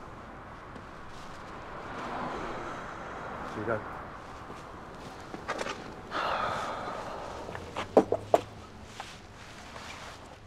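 Quiet movement sounds with a few light clicks, a breathy rush about six seconds in, and then two sharp knocks close together near eight seconds, the loudest sounds.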